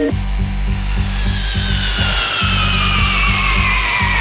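Electronic dance music from a live synthesizer set: a steady pulsing bass pattern, with a noisy, rasping synth sweep that glides slowly downward in pitch from about a second in.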